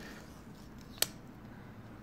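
A single sharp click about a second in, from a smartphone being handled and turned over in the hands, with otherwise only faint background noise.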